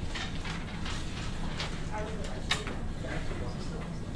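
Classroom background: indistinct murmur of students over a steady low hum, with scattered small clicks and knocks, the sharpest about two and a half seconds in.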